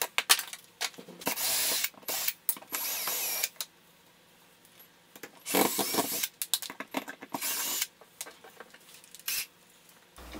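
Cordless drill/driver running in four short runs of about a second each, backing screws out of a metal electrical junction box. Sharp clicks and knocks from handling the box and its cover plate come between the runs.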